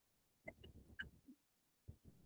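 Near silence, with a few faint, short sounds scattered through it.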